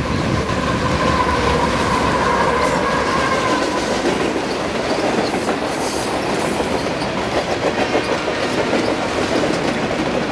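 A freight train's cars rolling past with a rapid, steady clickety-clack of wheels over the rails. A wavering wheel squeal runs over the first few seconds.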